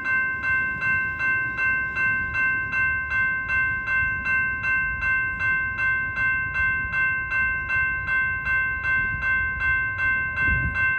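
Railroad grade-crossing warning bell ringing steadily at about two strokes a second, over the low rumble of a double-stack intermodal train rolling past.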